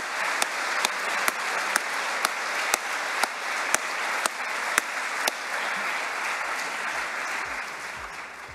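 Large hall audience applauding, with one set of louder, sharper claps standing out about twice a second for the first five seconds. The applause dies away near the end.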